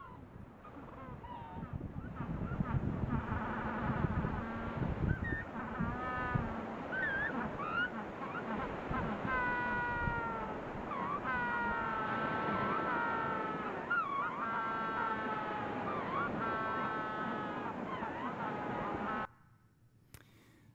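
A colony of Magellanic penguins calling: many overlapping, drawn-out calls from males advertising to attract females at the start of the breeding season, over a steady rush of surf. The calls build over the first few seconds and cut off suddenly near the end.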